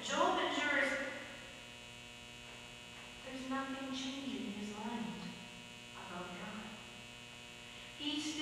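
A person's voice in short phrases with pauses, over a steady electrical mains hum in the recording.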